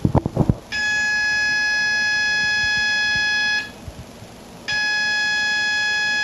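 Heathkit CO-1 code practice oscillator sounding its fixed tone of about 840 Hz through its small speaker, a buzzy tone far from a pure sine wave. Two long keyed tones, the first about three seconds and the second about a second and a half, with a pause of about a second between, after a few low knocks at the start.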